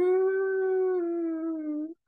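A woman's voice imitating a dump truck's engine: one long, steady vocal note that glides up at the start, dips slightly about halfway through, and stops just before the end.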